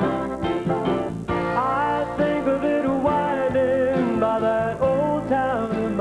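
Country band playing an instrumental break between vocal lines: a guitar lead with sliding, bending notes over steady backing.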